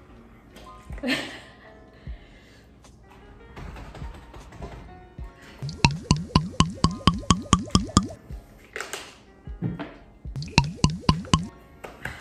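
Water glugging out of a plastic bottle as it is gulped from: a fast run of short, rising-pitched glugs, about seven a second, lasting some two seconds, and a second shorter run near the end. A sharp breath falls between the two runs.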